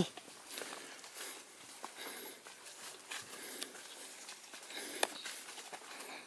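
Hikers' footsteps and light rustling on a dirt forest trail strewn with dry leaves and roots, soft and irregular, with a sharper tap about five seconds in.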